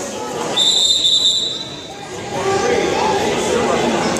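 A single steady high whistle blast, starting about half a second in and lasting about a second: a referee's whistle stopping the wrestling. Voices in the gym follow.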